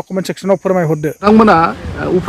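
Men's voices speaking, with a thin, steady insect trill from crickets in the field behind the first voice. The trill stops suddenly a little after a second in, when a second man's voice begins over a louder outdoor background.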